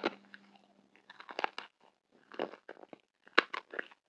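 Close-miked chewing of a marshmallow coated in tiny blue candy beads, the beads crunching in four clusters about a second apart.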